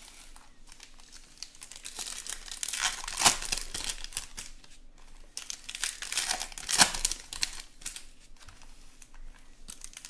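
Foil wrappers of 2020 Bowman Chrome trading-card packs crinkling and tearing as hands open them and pull the cards out. The loudest crackles come about three seconds in and again near seven seconds.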